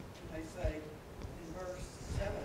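Speech from someone in the room away from the microphone: a faint, indistinct voice talking, the words too unclear to make out.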